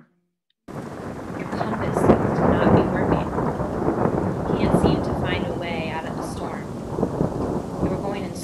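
Thunderstorm sound effect: heavy rain with thunder, coming in suddenly under a second in and running on as a dense, continuous noise that swells louder around two and five seconds.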